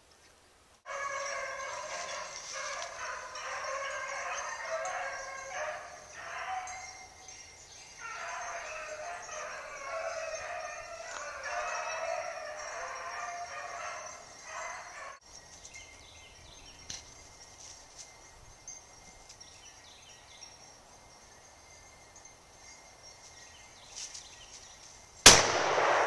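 A pack of beagles baying on a rabbit's track, many voices overlapping, through the first half. After that the woods are quieter, and near the end there is a single loud shotgun shot.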